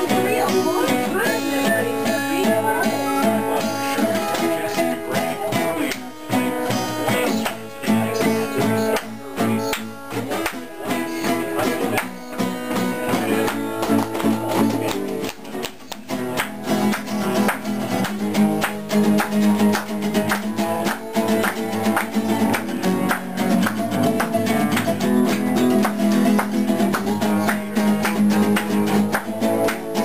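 Acoustic guitar strummed and picked in a brisk rhythm, played solo as an instrumental introduction before any singing, with a few brief breaks in the strumming.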